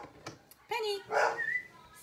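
A pet dog barking twice, about a second apart, in the second half.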